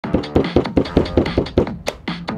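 A hand slapping a soft pancake of clay flat on a work table, a steady run of about five pats a second that stops just before the end.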